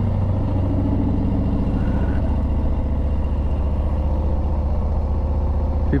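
Harley-Davidson Street Bob's Milwaukee-Eight 114 V-twin with an aftermarket exhaust, running steadily at low speed with an even, deep pulse. The exhaust note echoes off the concrete bridge walls.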